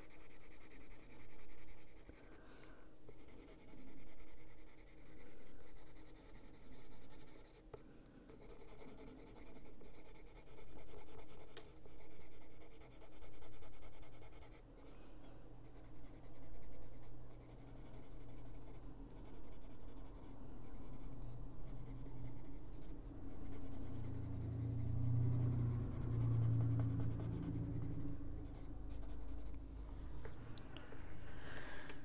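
Caran d'Ache Luminance coloured pencil shading on paper, in repeated strokes that swell and fade about every second and a half. A low hum comes up in the last few seconds.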